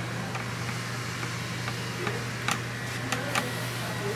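Steady low room hum and hiss, with a few brief soft clicks and rustles of towel and cape fabric being handled, about two and a half to three and a half seconds in.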